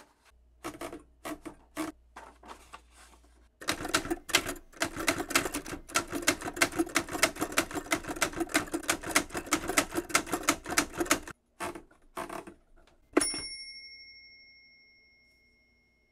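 Smith-Corona desktop manual typewriter: a few clicks as the paper is wound in, then a long run of rapid typebar strikes on the platen. Near the end comes one sharp strike followed by a single ringing ding that fades out over about two seconds.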